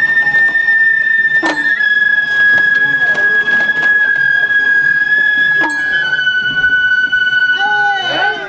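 Japanese festival bamboo flute (shinobue) holding one long, high note that steps down slightly in pitch twice, part of the float's festival music (matsuri-bayashi). Two sharp strikes cut in, about one and a half seconds in and again near six seconds.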